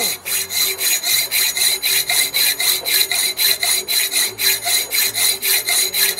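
Hand hacksaw cutting slots into a metal rowel blank for a spur, in quick, even back-and-forth strokes, a rasping metal-on-metal rhythm of about three strokes a second.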